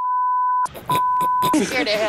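Two censor bleeps, steady 1 kHz tones, the first about three quarters of a second long and the second a little shorter, blanking out swearing in a reality-TV soundtrack; speech resumes just after the second bleep.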